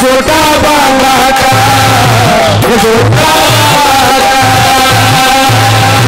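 Live Haryanvi ragni music played loud through a PA: a man's voice singing long, wavering held notes over an electronic keyboard and a steady low beat.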